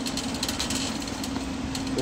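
Steady mechanical hum with one low, unchanging tone over an even wash of background noise in a large warehouse store.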